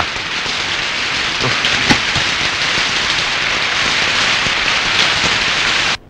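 Heavy rain pouring steadily, with a couple of faint knocks about one and a half to two seconds in; the rain cuts off suddenly at the end.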